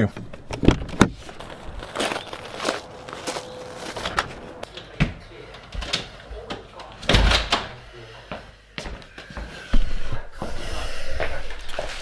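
Doors opening and shutting with knocks from the handheld phone: a run of separate thumps, the heaviest about seven seconds in as a house front door is shut.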